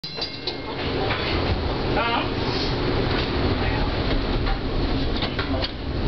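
Steady rumble and noise of a moving vehicle, with a brief voice about two seconds in.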